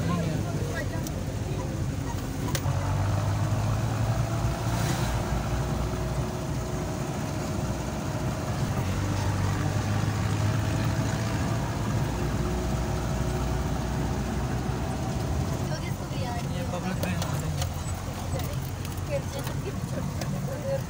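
Jeep engine running steadily under way on a rough mountain track, heard from inside the cab as a low, even drone that grows a little stronger a couple of seconds in.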